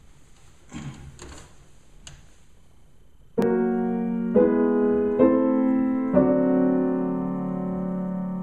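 Acoustic piano opening an improvisation: after a few faint rustles, slow full chords begin about three seconds in, struck roughly once a second and left to ring.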